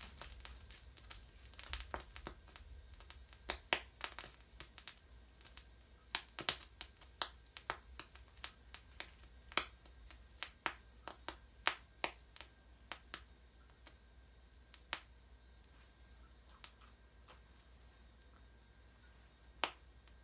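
Cotton reacting with manganese heptoxide, giving irregular sharp pops and crackles. They come thick for the first dozen seconds or so and then thin out to a few.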